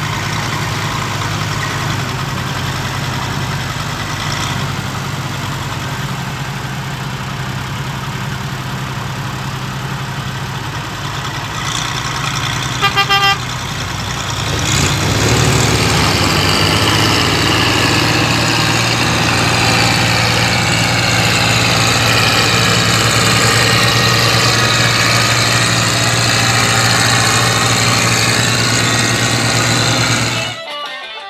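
Heavy farm machine's engine running steadily as it works through brush. A quick run of about three horn beeps comes about halfway through, and the engine grows louder from about 15 seconds on.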